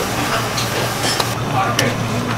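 A large pot of kimchi broth boiling steadily as hand-torn pieces of sujebi dough are dropped into it, with a few light clicks.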